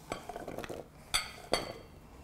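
Diced butternut squash cubes being swept off a wooden chopping board and dropping into a glass bowl: soft scraping and knocks, with two sharp ringing glass clinks about a second and a second and a half in.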